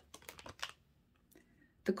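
A quick cluster of light clicks and flicks from a deck of tarot cards being handled as a card is drawn, lasting about the first half-second, then quiet.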